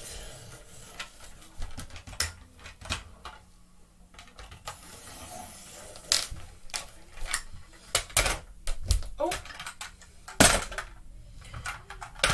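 A 1:24 scale diecast metal toy car is worked by hand on a wooden floor for a 'burnout', giving a scattered run of sharp clicks and knocks. One knock about ten seconds in is louder than the rest.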